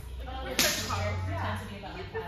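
A single sharp crack, like a snap or slap, about half a second in, with faint voices around it.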